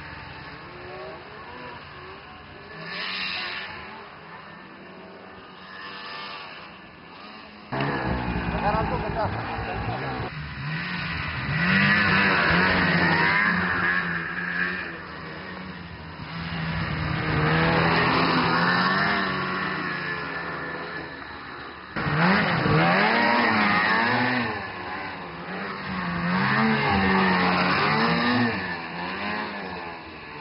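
Snowmobile engines revving as the sleds ride through snow, the pitch rising and falling with the throttle again and again. The sound changes abruptly about 8 seconds in and again about 22 seconds in.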